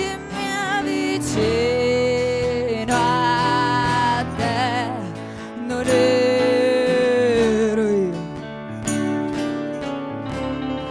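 Live music: a sung melody with two long held notes that bend downward as they end, over acoustic guitar accompaniment.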